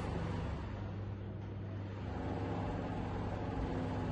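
A steady low hum over a faint even background noise, with no distinct events.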